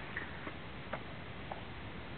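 A baby eating broccoli: four small, soft clicks and smacks over two seconds, above a steady background hiss.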